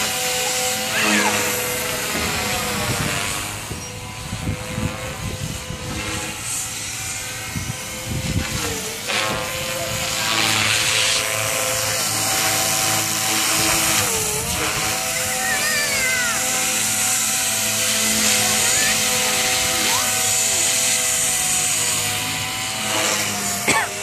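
Chase 360 radio-controlled helicopter flying overhead: a steady whine of motor and rotors. The pitch dips briefly twice, about a third and about halfway through, as it manoeuvres, and the sound is quieter for a few seconds early on as it moves away.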